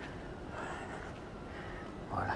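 Faint background noise of a large exhibition hall, with distant, indistinct voices.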